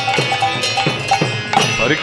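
Kirtan instrumental interlude. Mridanga drum strokes land about twice a second, each bass stroke sliding down in pitch. Brass hand cymbals (kartals) ring in a quick rhythm, with a harmonium holding under them. Near the end the lead voice starts to rise into the next chant line.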